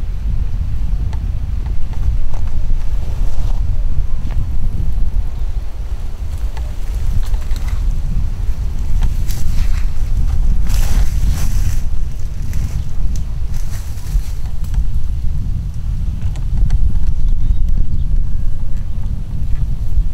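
Wind buffeting the camera's microphone: a loud, low rumble that runs on unevenly, with a few brief rustles about halfway through.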